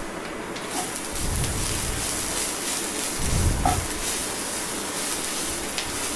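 Chopped onions, green chillies and freshly added curry leaves sizzling in hot oil in a nonstick pan, stirred with a wooden spatula, with a couple of soft low knocks from the stirring.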